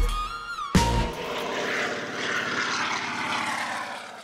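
Single-engine floatplane's propeller engine running at high power, a steady drone with rushing noise that fades away near the end. A short musical swell with gliding tones opens it.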